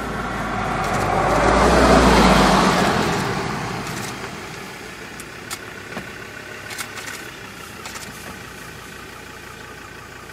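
An engine passing by: its sound swells to its loudest about two seconds in and then fades away, leaving a steady low background with a few faint clicks.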